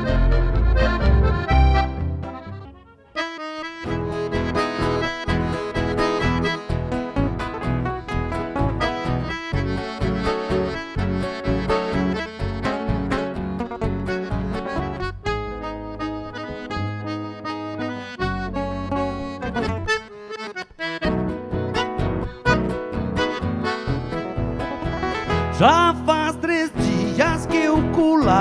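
A song's last chord dies away about three seconds in. Then a nylon-string classical guitar plays a fingerpicked instrumental introduction, and a voice starts singing at the very end.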